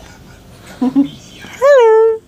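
A voice saying a loud, high, sing-song 'hello' near the end, its pitch rising and then falling. Two short vocal sounds come about a second in.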